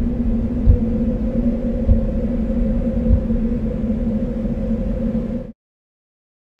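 Low drone from a logo intro's sound design: a deep rumble with a hum held on two pitches and faint thuds about once a second, cutting off abruptly near the end.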